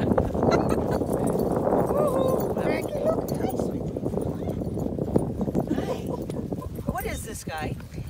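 Wind rumbling on a phone microphone outdoors, with irregular footsteps on dry grass and faint voices of people talking.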